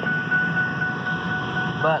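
Car interior noise while driving: a steady road and engine rumble with a thin, constant high whine.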